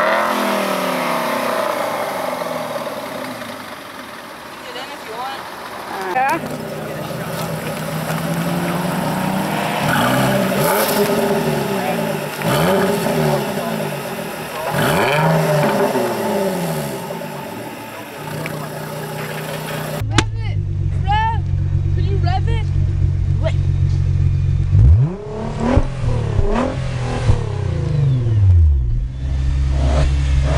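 A run of parked sports cars being revved in turn: an Aston Martin Vantage's engine idling and revving, then a Jaguar F-Type's engine blipped several times, each rev rising and falling back. About twenty seconds in, a Nissan GT-R's twin-turbo V6 idles steadily with a couple of quick throttle blips near the end.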